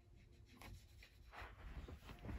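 Near silence: room tone with two faint brief rustles of handling noise.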